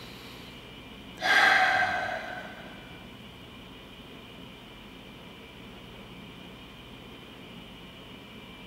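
A man's deliberate, audible breath: a long exhale starting about a second in and fading over about a second and a half, as in slow meditative breathing. After it, only steady room tone.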